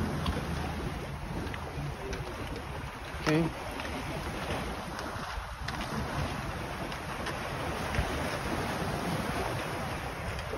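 Wind rushing over the microphone and small waves washing against jetty rocks: a steady noise with no clear pitch.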